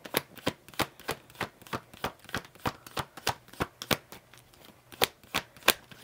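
A deck of cards being shuffled by hand: a run of short, irregular card slaps and clicks, about three a second, with a brief lull a little past the middle.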